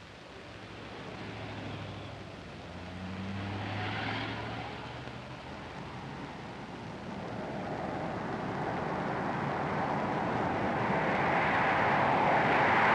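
Jet airliner approaching overhead: a rushing engine noise that swells a little twice, then grows steadily louder through the second half.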